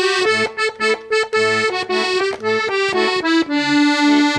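Accordion playing an instrumental passage: a melody of held notes over lower bass notes that come and go beneath it.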